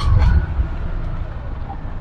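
Petrol engine of a TVS King auto-rickshaw running steadily under way, a low rumble heard from inside the open cabin along with road noise.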